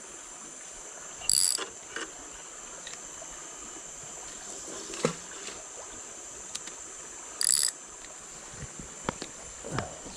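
Spinning reel being worked, in two short mechanical bursts about a second in and again near the end, a few light clicks between. A steady high-pitched insect drone runs underneath.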